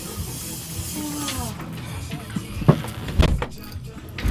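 Aerosol spray can hissing in one long burst that stops about a second and a half in, followed by a few sharp knocks and thumps.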